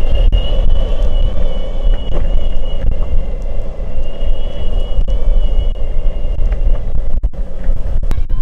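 Boosted Board electric skateboard rolling over rough asphalt: a loud, steady low rumble from the wheels, with a thin, steady high whine from the board's motor drive over it.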